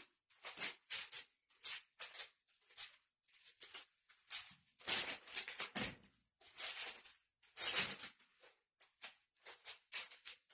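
A pair of practice sticks swishing through the air in quick, irregular strokes during a dual-stick Krabi Krabong form, with bare feet moving on the mat. The strokes are loudest about five seconds in and again near eight seconds.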